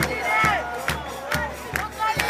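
Football supporters chanting together, backed by a bass drum beaten steadily about twice a second.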